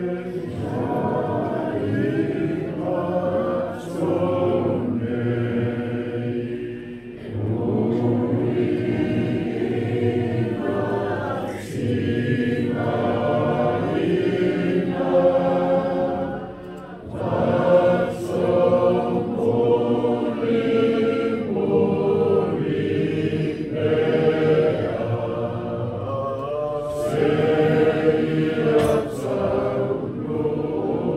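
A congregation singing a hymn together, many voices in sustained phrases with brief breaths between lines.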